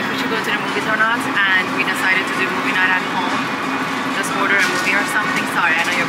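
Supermarket background sound through a camera's built-in microphone: indistinct voices coming and going over a steady hum and general store noise, with a few faint clicks.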